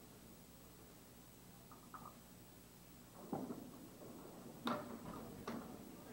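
Candlepin bowling: a ball rolls down the wooden lane from about three seconds in, then sharp clacks as it strikes the pins, the loudest near the end of the roll.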